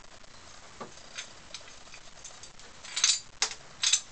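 Small clicks and taps of a Yale-style nightlatch's metal latch bolt and wire spring being reseated, turned the other way round, in the lock's plastic case: a few faint clicks, then several sharper ones near the end.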